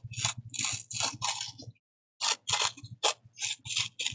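A thin sheet of paper torn by hand in a series of short rips, pausing briefly about two seconds in.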